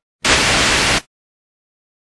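A loud burst of static-like white noise, just under a second long, starting and stopping abruptly at a steady level.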